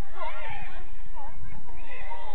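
Several people shouting and calling out at once on a football pitch, high-pitched voices overlapping as play goes on around the goalmouth.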